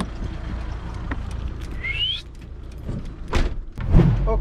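A camper van's cab door being handled and shut, with a short rising squeak about halfway and two thumps near the end, the second the loudest, over a steady low vehicle rumble.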